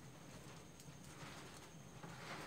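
Near silence, with the faint taps and scratches of a marker writing on a whiteboard.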